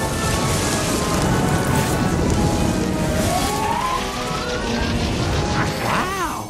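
Cartoon magic-spell sound effect: a dense, loud rushing swirl with a tone gliding upward in pitch a few seconds in, over orchestral background music.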